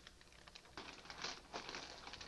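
Food being handled on a plate: a few short rustling, clicking sounds, the loudest a little over a second in.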